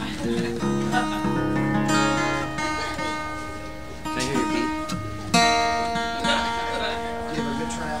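Acoustic guitar strumming chords that ring out and fade, with a fresh chord struck about five seconds in.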